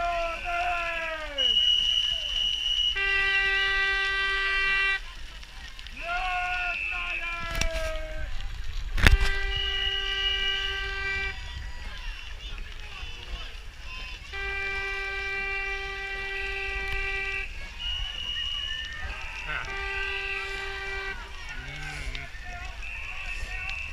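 Four long horn blasts from the towpath, each held for about two seconds, mixed with shorter shrill whistle blasts and falling shouts from bank supporters urging on a racing rowing eight. A sharp knock sounds about nine seconds in.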